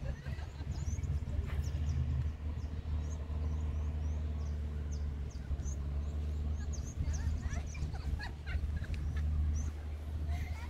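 A steady low motor hum, with many short, high chirps of small birds over it, thicker in the second half.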